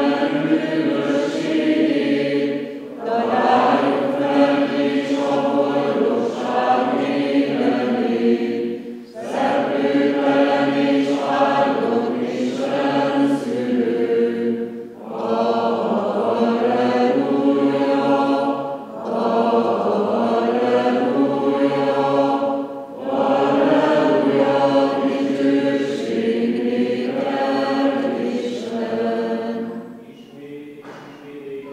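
Unaccompanied group singing of Greek Catholic funeral chant, in long phrases broken by short pauses every few seconds.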